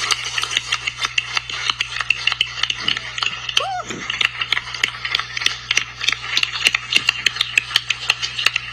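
A room of people applauding: many irregular hand claps, with a short rising cheer about three and a half seconds in, over a steady low hum.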